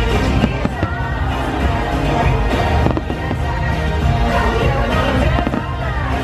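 Fireworks bursting several times with sharp bangs, over music that plays throughout.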